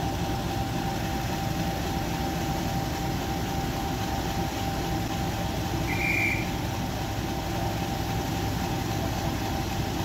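Class 50 diesel locomotive idling steadily at a standstill: a low rumble with a constant whine. A short high whistle sounds once, about six seconds in.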